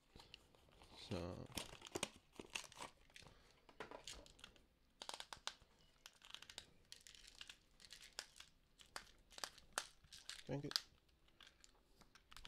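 Allergy-medicine packaging being handled and opened: faint crinkling with many small, sharp crackles scattered throughout.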